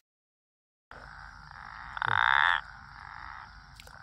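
A frog's call: one loud, finely pulsed croak lasting about half a second, about two seconds in, over a faint steady background. The first second is silent.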